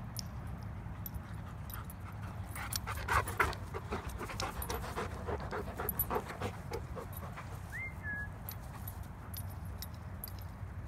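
Black goldendoodle panting hard in a quick run of rhythmic breaths, loudest about three seconds in and easing off by seven seconds. A single short rising squeak follows near eight seconds.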